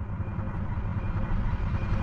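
Outro sound effect for a logo animation: a low rumble that cuts in suddenly out of silence and grows steadily louder.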